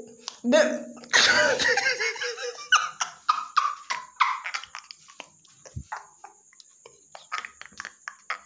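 A person breaking into laughter, loud bursts at first, then quieter stifled giggles, clicks and breaths.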